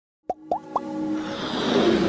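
Intro sound effects for an animated logo: three quick rising pops in the first second, then a swelling whoosh with held tones that builds steadily.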